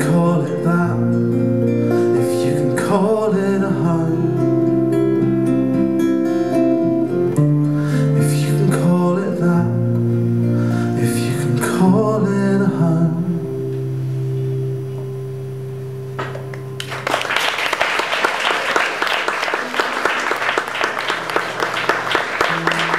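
Two acoustic guitars strumming the closing chords of a song, then a last chord left ringing and fading away. About three-quarters of the way in, the audience breaks into applause.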